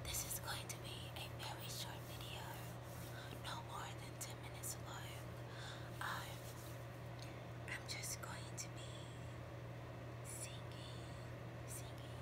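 Whispered speech: a woman whispering close to the microphone, over a steady low hum.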